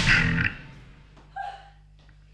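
The last chord of a live electric song, bass guitar included, ringing out and dying away within about half a second. Then only the steady low hum of the amplifiers, with one short pitched sound about a second and a half in.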